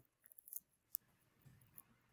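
Near silence on a video call, with a few faint, brief clicks.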